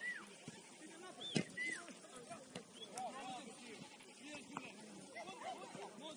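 Distant shouts and calls of football players and coaches across the pitch during play, with a sharp knock about a second and a half in.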